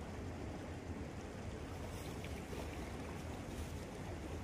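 Steady low wind rumble on the microphone over the faint, even rush of a small river flowing past.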